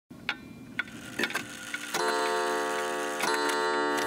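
Pendulum wall clock ticking about twice a second, then its chime striking the hour: two strikes, about two seconds in and again just over a second later, with the tone ringing on.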